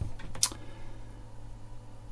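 Quiet room tone with a low steady hum and one short, sharp click about half a second in.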